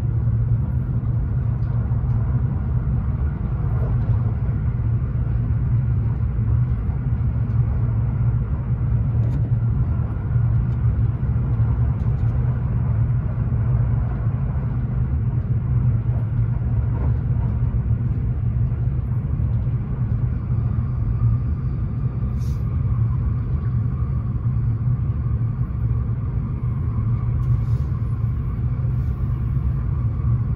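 Kintetsu 80000 series "Hinotori" limited express train running at speed, heard from inside the passenger cabin: a steady low rumble of wheels on rail. A faint steady whine comes up in the last third.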